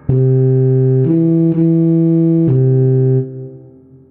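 Computer playback of a low tuba line from a notation score: four held notes at an even level, the last cut off a little after three seconds in and fading away.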